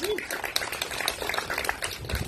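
A small crowd clapping: a dense, even patter of many quick claps.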